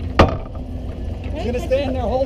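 A single sharp crack of a hockey impact on the rink, a puck or stick strike, about a quarter second in. Voices call out near the end. A low rumble of wind on the microphone runs underneath.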